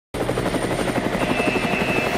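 Helicopter rotor chop, a fast even beating that starts abruptly, with a faint high whine joining about a second in.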